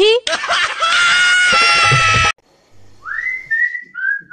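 Background music holding a steady note of several tones, which cuts off suddenly a little over two seconds in. About a second later a person whistles a quick rising glide into a held high note, followed by more short whistled notes.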